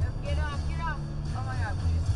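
Music playing on the car stereo inside a moving car's cabin, with a heavy pulsing bass line and two short phrases of a high voice over it.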